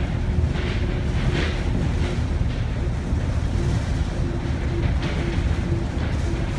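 Cabin noise of a moving monorail car: a steady low rumble from the running gear, with a faint humming tone from the drive that comes and goes and soft hissing swells.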